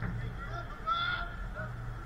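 A short, honk-like shout from a player on the pitch about a second in, over a steady low hum.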